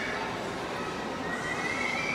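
Steady background noise of a busy shopping-mall atrium, with a faint thin high tone that climbs slightly from a little past halfway.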